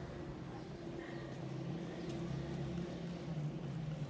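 A steady low hum with a few held tones, like a motor running.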